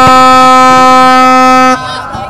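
A handheld air horn gives one long, loud, steady blast on a single low note, cutting off abruptly near the end. A sharp knock of the ball being struck comes just at the start.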